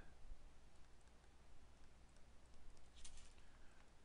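Near silence with a few faint clicks of a stylus tapping and moving on a tablet while handwriting.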